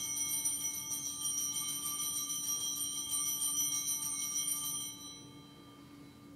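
Altar bells (sanctus bells) rung at the elevation of the chalice. It is a bright, shimmering ringing of several small bells at once, which fades out about five seconds in.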